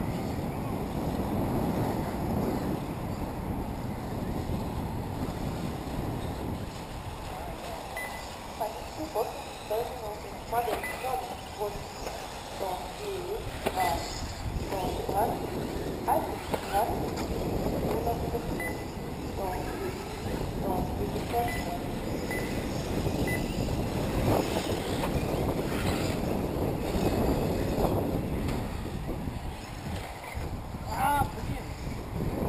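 Wind rumbling on the microphone, with indistinct voices chattering in the middle part.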